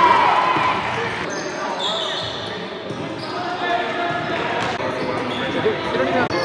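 Indoor basketball game sounds in a gym hall: a basketball bouncing on the court, sneakers squeaking in short high chirps, and players' voices calling out, all with the hall's echo.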